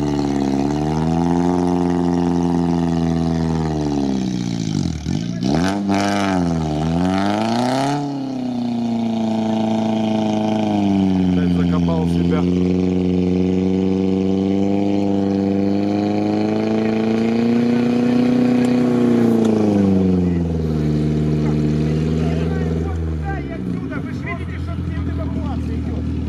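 Off-road 4x4 engine revving hard under load, as on a steep climb out of water. Its pitch drops sharply and comes back twice about five to seven seconds in, holds high and steady for a long stretch, then eases off near the end.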